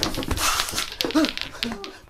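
A person's theatrical wailing cry: breathy and harsh at first, then breaking into short falling whimpering sobs.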